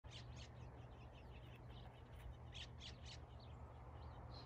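Faint bird chirps: a scatter of short high calls, with a few louder ones a little past halfway, over a low steady rumble.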